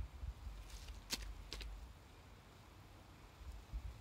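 Quiet outdoor background with a faint low rumble and a few short clicks about a second in.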